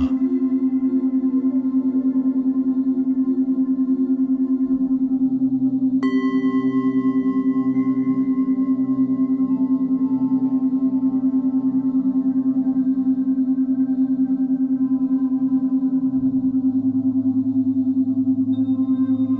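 Ambient meditation music: a steady, evenly pulsing drone with singing-bowl-like tones. About six seconds in, a new bell-like tone is struck and slowly fades.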